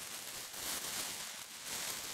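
Red tissue paper and a plastic-wrapped package rustling and crinkling continuously as they are handled during unwrapping.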